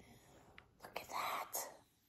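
A soft whispered, breathy exclamation lasting about a second, starting about a second in, with a few faint ticks of embroidery floss skeins being handled before it.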